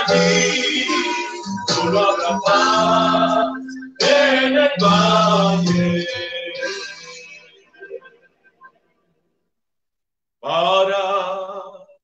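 A small group of men and women singing a hymn together, the last held note dying away about seven seconds in. After a few seconds of silence, a man's voice starts up again near the end.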